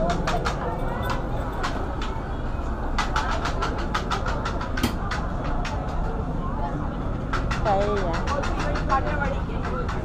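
Busy outdoor market crowd ambience: background chatter over a steady low rumble, with quick runs of sharp clicks and clatter.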